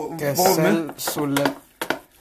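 People talking, with two sharp clicks near the end.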